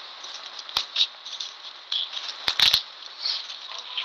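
Scattered sharp clicks and crackles over a steady hiss on a phone voice-note recording, with a cluster of clicks about two and a half seconds in.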